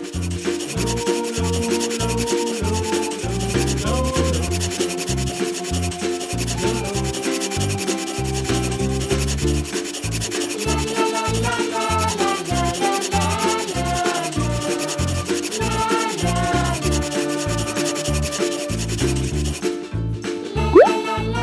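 Felt tip of a black permanent marker rubbing and scratching on paper as a drawing's outline is inked. Background music plays a changing melody underneath.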